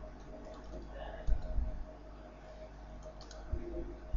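Computer keyboard keys clicking as text is typed, a scatter of short clicks with a low thump about a second in, over a faint steady hum.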